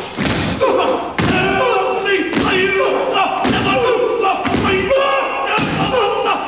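Group of men performing a Māori haka: shouted chanting in unison, punctuated by heavy stamp-and-slap thuds about once a second.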